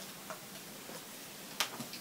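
Faint clicks and taps of small plastic cosmetic items being handled and set down, with a sharper click about one and a half seconds in, over low room hiss.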